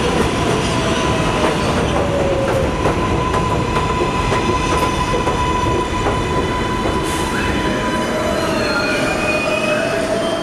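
R188 subway train pulling into an elevated station and braking: a steady rumble of wheels on rail with a held high squeal, and whining tones that slide in pitch in the second half as it slows to a stop.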